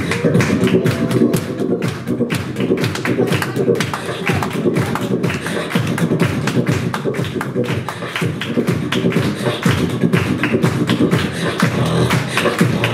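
Live beatboxing into a handheld microphone: a fast, unbroken run of percussive mouth sounds, drum-like clicks and hits, over a low voiced tone.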